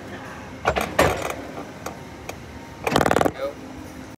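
Ride seat restraint mechanism clicking rapidly in two short bursts, like a ratchet, once about a second in and again about three seconds in.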